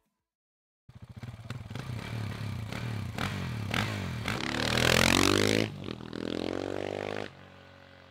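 Dirt bike engine revving up and down in repeated blips, starting about a second in, climbing to its loudest about five seconds in, then cutting back and dropping away near the end.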